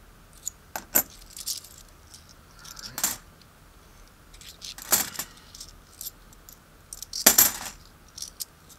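Kennedy half-dollar coins clinking together as they are handled and passed between the hands, in scattered clusters of sharp metallic chinks. There is a cluster about a second in, others near three and five seconds, and the loudest just past seven seconds.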